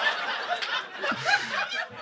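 Laughter from a live audience, many voices chuckling together, with a man on stage laughing close to the microphone.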